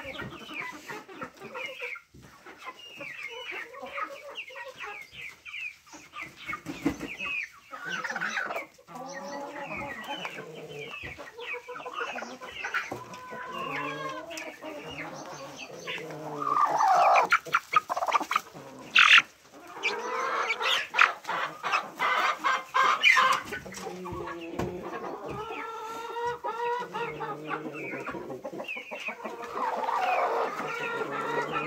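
A flock of chickens clucking continuously, with many overlapping short calls that grow louder and busier about halfway through.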